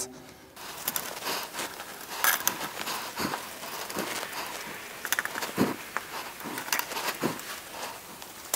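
Steel nuts being threaded by hand onto exhaust manifold studs, with irregular small metallic clicks and a few soft knocks as the gloved hands handle the nuts and manifold.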